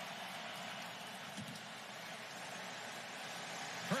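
Steady, even hiss-like noise with no distinct events.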